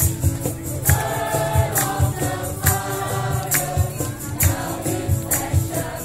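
A Christmas carolling choir singing together, with sustained sung notes over an accompaniment that keeps a steady beat of sharp percussive hits.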